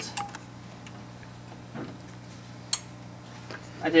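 A few small clicks as RJ45 plugs on UTP network cables are pulled from and pushed into the ports of a video splitter, with one sharp click a little under three seconds in.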